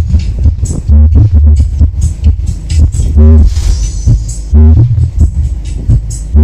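Loud electronic dance music played through a large sound-horeg rig of nine subwoofer boxes during a sound check. The music has heavy sub-bass hits and a pitched phrase that recurs every second or two.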